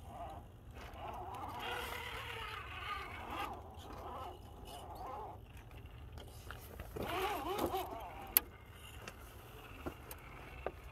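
Axial SCX10 RC rock crawler's small electric motor and geared drivetrain whining in spurts, its pitch rising and falling with the throttle as it crawls over rock. A single sharp click about eight seconds in.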